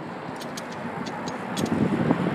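Steady rushing noise of wind on the microphone while moving outdoors, with a few faint high ticks.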